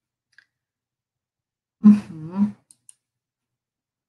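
Mostly silence, broken by a woman's brief "uh-huh" about two seconds in. Two faint, short clicks follow close together.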